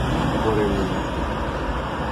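Steady vehicle and traffic noise heard from inside a car crawling in a traffic jam, with a low rumble underneath.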